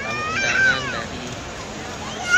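A baby crying: a high wailing cry in the first second that rises and then falls away, over the murmur of a crowd.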